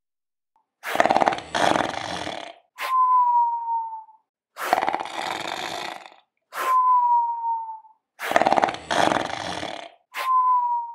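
Cartoon snoring from a clay character: a rough, rasping snore drawn in two pulls, then a sharp click and a thin falling whistle on the out-breath, repeated about every four seconds. Three snores are heard, the first two each followed by a whistle.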